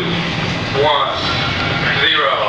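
Indistinct voices over a steady low hum.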